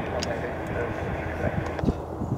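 Antonov An-22's four turboprop engines with contra-rotating propellers making a steady low drone as the aircraft climbs away after takeoff, with voices talking over it.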